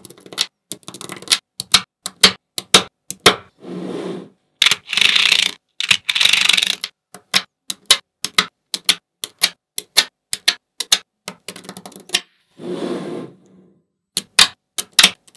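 Small neodymium magnet balls clicking as strips of them snap onto a slab of magnet balls, in quick irregular sharp clicks. Between the clicks come a few longer rattling stretches of about a second each, twice near the middle and once near the end.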